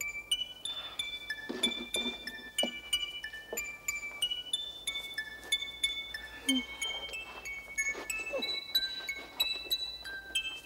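A wind-up music box playing a slow tune: its steel comb is plucked by the turning pin cylinder, giving single high, ringing notes a few times a second.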